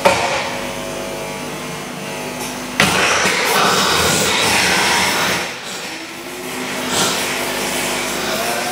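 Harsh live noise music: a dense, grinding wall of amplified noise that cuts in loudly at the start, surges abruptly about three seconds in, drops back a little past five seconds and swells again near the end.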